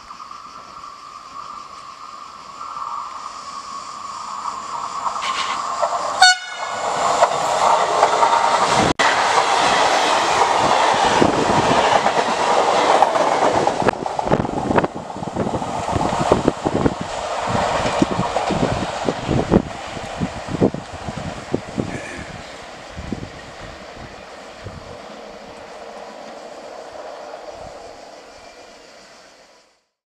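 A Trenitalia E.464 electric locomotive hauling a regional train approaches with a steady horn note for the first few seconds, then runs through the station at speed, its wheels clattering rhythmically over the rail joints. The passing is loudest between about seven and thirteen seconds in, then fades away near the end.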